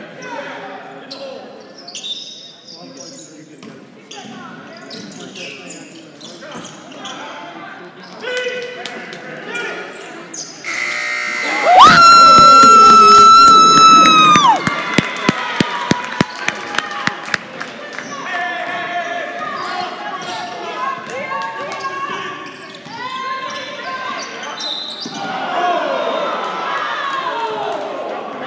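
Basketball dribbling and players' and fans' voices in a gym. About twelve seconds in, a very loud, steady horn-like tone is held for about two and a half seconds as the home side hits a three-pointer. It is followed by a run of sharp, evenly spaced knocks, about three a second.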